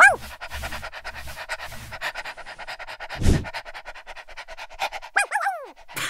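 A dog panting quickly and steadily, with a short high whine that falls in pitch at the start and a few quick falling whimpers near the end. A single low thump comes about three seconds in.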